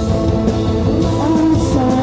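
A live band playing rock music, loud and steady, with sustained pitched parts over a dense low end.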